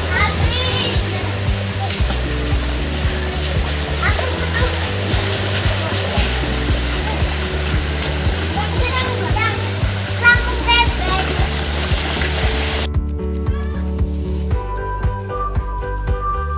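Children wading and splashing in a shallow swimming pool, with short shouts and calls, over background music with a steady beat. The splashing and voices cut off suddenly about thirteen seconds in, leaving only the music.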